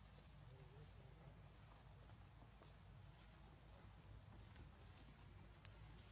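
Near silence: faint outdoor background with a few faint clicks.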